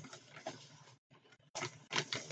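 Faint rustling and handling of plastic razor packs, in two short patches with a near-silent pause between.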